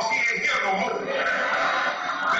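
A male preacher's voice, amplified through a handheld microphone and a public-address system, delivering a sermon.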